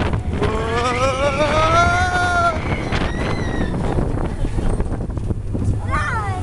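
A rider's long whoop that wavers and rises in pitch, over the steady rumble of a mine-train roller coaster running on its track, with wind buffeting the microphone. A fainter, high-pitched call follows about three seconds in.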